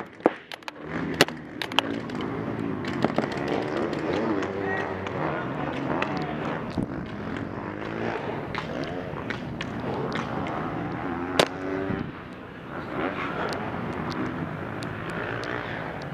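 Distant shouting voices across a paintball field over a steady background hiss, with a few sharp pops of paintball shots, the loudest about a second in and again about eleven seconds in.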